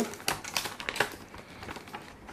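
Irregular light clicks and taps of a cardboard box and its clear plastic packaging tray being handled and opened.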